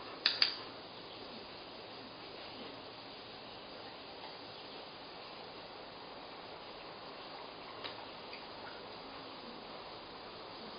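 A dog-training clicker gives one sharp two-part click, press and release, just after the start, marking the dog's raised paw as the right behaviour. A steady electric-fan noise runs underneath, with one faint tick near the end.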